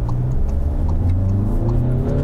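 Skoda Superb's four-cylinder diesel heard from inside the cabin under way, a steady low drone with an engine note that rises slowly as the car pulls.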